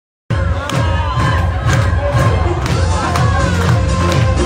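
Loud dance music with a heavy, fast, pulsing bass beat, and a crowd cheering and shouting over it.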